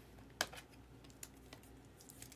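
Small plastic clicks and taps from handling a trading card in a clear plastic holder: one sharp click about half a second in, then a couple of fainter ones.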